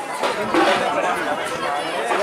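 Several people talking at once: overlapping conversation with no other sound standing out.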